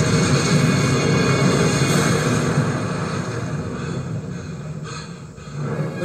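Action-film soundtrack playing from a TV: dramatic score mixed with the rumble of explosions, loud at first and fading down about five seconds in.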